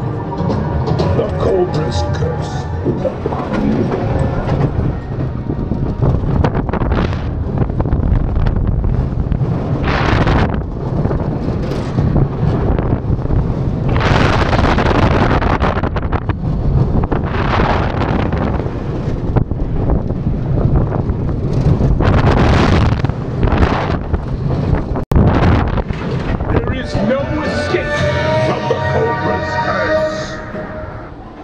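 Mack Rides steel spinning coaster car running along its track: a steady rumble of wheels on steel, with wind buffeting the microphone in loud surges on the fast stretches. Steady pitched tones sound near the start and again near the end as the car slows into the brake run.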